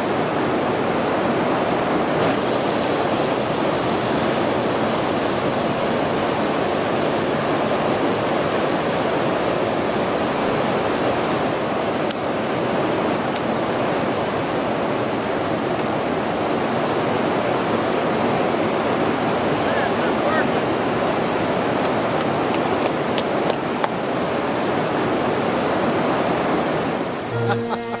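Whitewater rapid on the Colorado River: a steady, unbroken rushing of churning water. Violin music starts right at the end.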